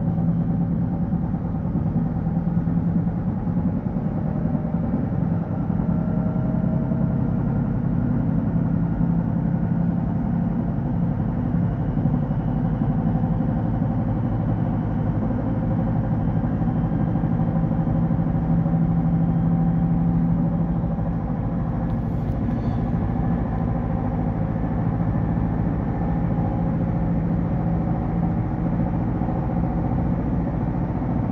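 Steady running noise inside an electric regional train travelling at speed: a low hum and rumble from wheels on rail and traction equipment, with faint whining tones drifting slowly in pitch.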